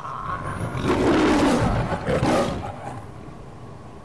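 A lion's roar, the one used in the MGM film-studio logo, starting about a second in, in two pushes, the second briefer, then dying away.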